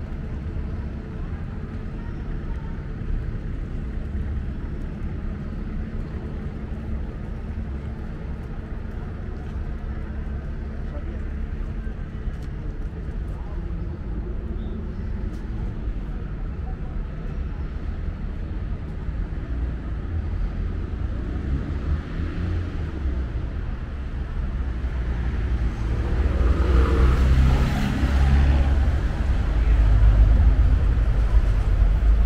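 City street traffic: a steady low hum of cars. Near the end it grows louder as a vehicle passes close by.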